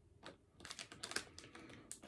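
Faint, irregular light clicks and crinkles of a small plastic toy package being turned over in the hands, starting about half a second in.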